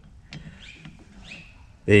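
Faint metallic clicks and light scraping from a spanner working the snail-cam adjuster and the adjustment tool on a Citroën 2CV rear drum brake as the shoe is set out, followed by a spoken word.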